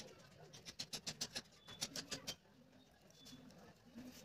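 Precision craft knife cutting along pencil lines in a sheet of paper card: a run of quick, irregular scratchy ticks as the blade drags and catches in the paper, thinning out after about two and a half seconds.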